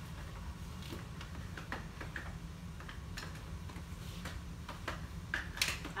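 Scattered light clicks and taps from stroller seats and frame being handled and repositioned, with a few sharper clicks near the end, over a steady low room rumble.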